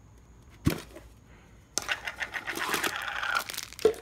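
A plastic end cap comes off a cardboard mailing tube with one sharp pop. From a little under two seconds in, the clear plastic bag wrapping the tube's contents crinkles and rustles steadily as it is pulled out.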